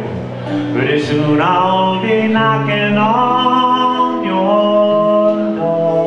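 Two men singing long held notes in harmony over acoustic guitar, with the voices sliding up in pitch a couple of times.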